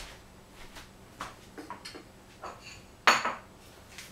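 Kitchenware being handled: a few light clinks and knocks of utensils against dishes, then a louder clatter about three seconds in that rings briefly.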